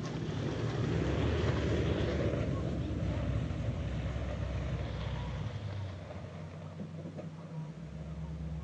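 A pickup truck driving past, its engine hum swelling about a second in and fading away after five or six seconds.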